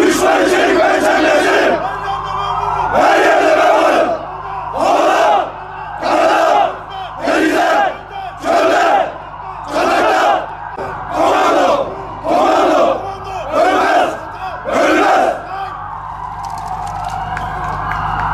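A formation of Turkish commando soldiers shouting in unison: a long shouted phrase, then about ten short, loud shouts in a steady rhythm, a little over one a second, before the voices fall away near the end.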